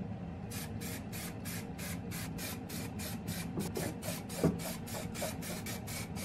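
Aerosol spray-paint can sprayed in short rapid bursts, about three or four a second, putting paint on a metal lamp body. A single knock sounds about four and a half seconds in.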